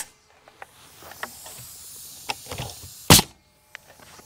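A pneumatic nail gun fires once about three seconds in, a sharp shot driving a nail into a treated pine fence picket, with faint clicks of handling before it.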